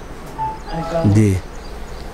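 A man's voice: a brief drawn-out sound that falls in pitch, about a second in.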